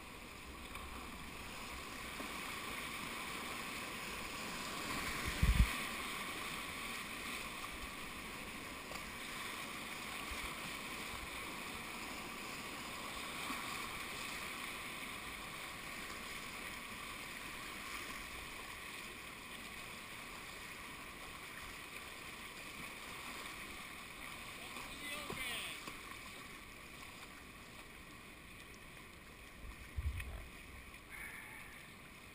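Whitewater rapids on a river running high, rushing and splashing steadily around a kayak, with one sharp thump about five and a half seconds in.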